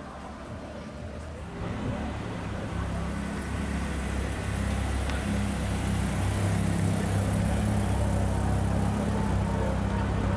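BMW E30 3 Series rally car's engine running at low revs, a steady low note that comes in about two seconds in and grows louder as the car rolls close by.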